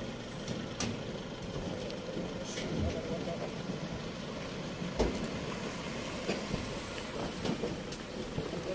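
Toyota Fortuner SUV driving slowly toward the microphone, a steady low engine and tyre noise, with a single thump about five seconds in.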